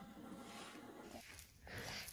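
Very faint room tone, almost silent, that cuts out completely for a moment about one and a half seconds in.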